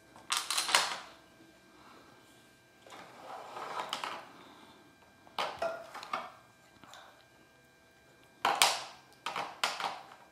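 Small counting rods clacking against each other and on a tabletop as they are picked from a pile and set down in a row, in short bursts of clicks a few seconds apart, the loudest near the end, with a softer scraping stretch around three seconds in.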